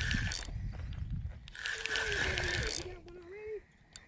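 Spinning fishing reel being cranked to retrieve line, its gears and rotor whirring in two spells: briefly at the start and again for about a second near the middle.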